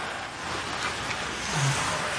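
Ice hockey rink sound from a live game: skate blades scraping the ice and a steady arena hum, with a few faint stick or puck clicks.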